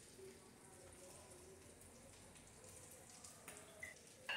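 Near silence: faint room tone, with a couple of light clicks near the end.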